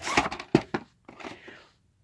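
Handling of a VHS tape and its case: a quick run of plastic clicks and rustles in the first second, then a fainter scraping rustle.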